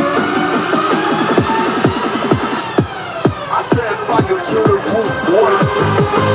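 Techno DJ mix with a fast, driving kick drum. About halfway through a falling sweep comes in as the beat briefly thins, then a wavering higher line plays over the returning beat.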